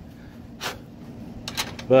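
A few sharp metallic clicks as a brass refrigerant service-valve cap is handled and fitted onto a mini-split condensing unit's valve, over a low steady background.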